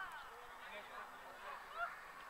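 Faint, scattered shouts of football players calling on the pitch, with a short sharper sound near the end.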